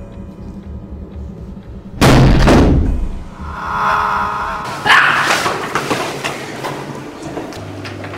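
Film soundtrack: a low suspense-music drone, broken about two seconds in by a sudden loud thud that rings out. A swelling sound follows, then a second sharp hit about five seconds in that trails off.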